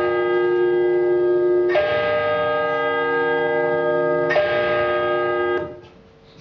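Bells ringing: a fresh stroke about every two and a half seconds, each one held long and changing pitch from stroke to stroke. The ringing cuts off suddenly shortly before the end.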